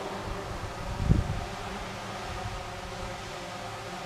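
DJI Phantom 3 quadcopter's propellers and motors whirring steadily in flight, a buzz of several steady tones, with a low thump about a second in.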